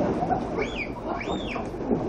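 Pool water splashing and churning as a loaded canoe swamps and tips over, with two high, arching squeals from the people tumbling into the water about halfway through.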